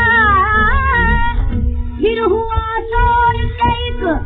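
Instrumental opening of a 1931 Columbia 78 rpm shellac recording of Hindustani vocal music: a melody wavering in pitch for the first second and a half, then held and shifting notes. The sound is narrow and dull, with nothing above the middle treble, over a steady low rumble from the old disc.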